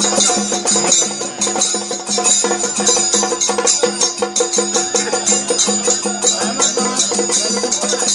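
Traditional temple festival music: fast, steady percussion with a sustained pitched drone beneath.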